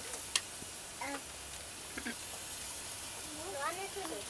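Brief, high-pitched children's voices murmuring and calling out over a steady background hiss, with a sharp click about a third of a second in.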